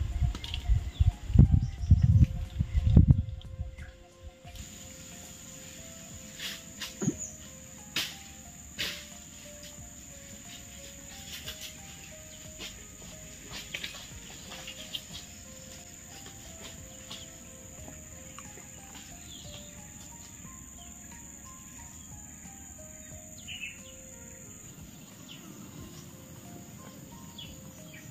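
Soft background music of short, stepping notes over a steady high-pitched insect drone, with a few scattered clicks. Loud low thumps fill the first few seconds.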